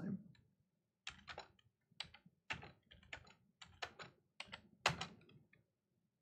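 Faint computer keyboard typing: about a dozen separate key presses, unevenly spaced, starting about a second in.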